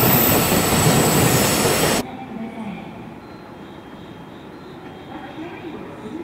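A freight train running past close by: a loud, even rushing noise that cuts off abruptly about two seconds in. After that, only much quieter railway station background remains.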